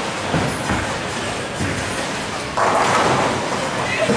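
A ten-pin bowling ball rolls down the wooden lane with a low rumble. About two and a half seconds in, it smashes into the pins with a sudden loud crash and clatter: a strike.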